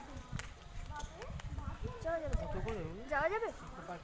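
People talking, with wind rumbling on the microphone underneath.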